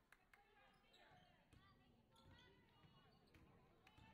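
Faint basketball bounces on a hardwood gym floor, with distant voices in the hall.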